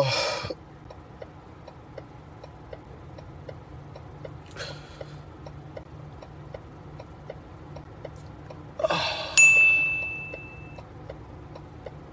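A tearful man's breathing in the quiet: a sniff or gasp about four and a half seconds in and a louder sob-like breath near nine seconds, over a faint steady ticking of about four ticks a second. Just after the second breath a single bright ding rings out and fades over about a second.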